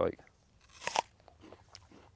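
A bite into a crisp, slightly underripe Lord Lambourne apple: one sharp crunch just under a second in, then faint chewing.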